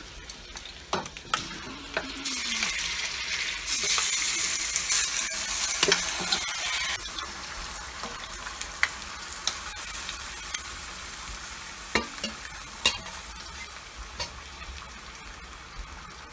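Curry-seasoned goat meat sizzling in a hot stainless steel frying pan as it is tipped in. The sizzle swells to its loudest a few seconds in, then settles to a lower steady frying sound while the meat is stirred, with a few sharp knocks of the spoon against the pan.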